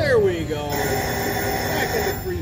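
Lock It Link Diamonds slot machine's electronic sound effects as three diamond scatter symbols land and trigger the free-spin bonus: a falling tone, then steady held chiming tones.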